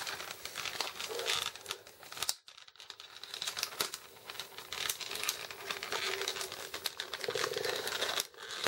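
Plastic toy packaging crinkling and crackling as an action figure is worked out of it, with a brief pause about two and a half seconds in.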